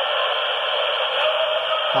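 Steady hiss of a noisy recording, thin and without lows or highs, with no distinct event.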